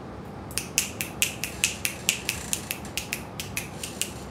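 Fingers snapping in a quick, even run of about six snaps a second, starting half a second in and stopping just before the end.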